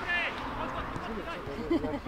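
Men's voices calling out on a football pitch during play, with shouts from the field and no other clear sound.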